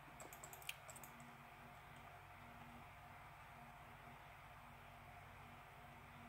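Near silence: a few faint laptop clicks in the first second, then quiet room tone.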